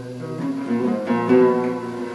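Oud playing a melodic run of plucked notes.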